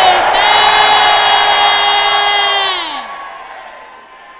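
One long, loud held shout, a single sustained 'aaah', over the congregation shouting together; the held note drops in pitch and dies away about three seconds in, leaving a fading crowd murmur.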